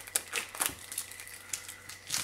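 Plastic shrink wrap crinkling in short, irregular crackles as hands peel it off a boxed album.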